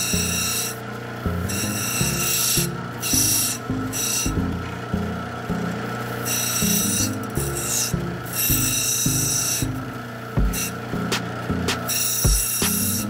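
An opal being ground on the wet wheel of a cabbing machine: a rasping grind that comes and goes in short stretches as the stone is pressed to the wheel and lifted off, over the steady hum of the machine's motor.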